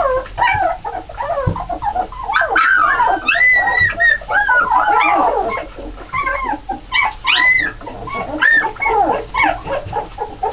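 A litter of 17-day-old Alaskan Malamute puppies crying: many short, high cries that rise and fall, several voices overlapping with hardly a pause.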